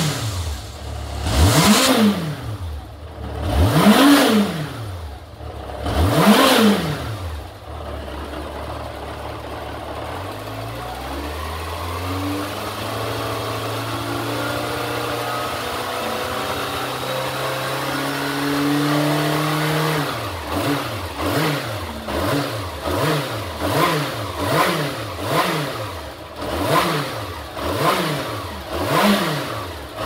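Yamaha XJR400R's air-cooled inline-four engine revved: four big throttle blips in the first eight seconds, then revs raised slowly and steadily for about ten seconds before dropping back suddenly, then short quick blips about once a second.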